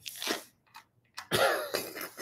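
A person laughing in two short breathy bursts, the second about a second and a half in.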